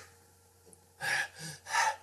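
A person panting hard, three short breathy gasps starting about a second in.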